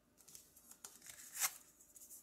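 Tarot cards being slid across the table and picked up by hand: a few faint, short papery swishes, the loudest about one and a half seconds in.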